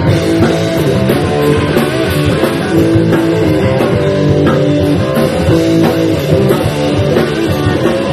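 Loud punk rock played live by a band: guitar and drum kit in an instrumental passage without singing.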